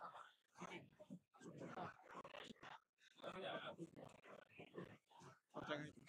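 Faint, indistinct talking in short broken phrases, just above near silence.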